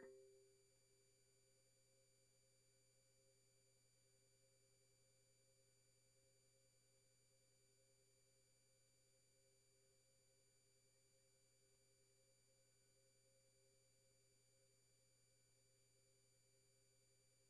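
Near silence: only a faint steady hum of a few constant tones, with the last plucked note of the preceding music dying away in the first half second.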